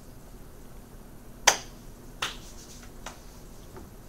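Three sharp hand slaps about three-quarters of a second apart, the first the loudest, with a faint fourth one near the end.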